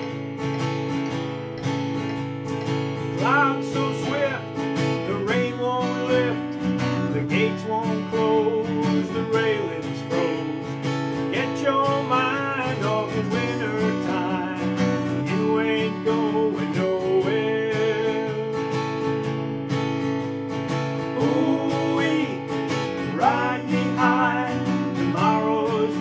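Steel-string acoustic guitar, capoed at the second fret, strumming a brisk country-rock chord pattern as a song intro. A higher melody line slides and bends in pitch over the chords several times.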